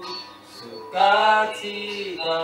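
Slow vocal music: a voice holding long, sustained notes, with a louder phrase about a second in.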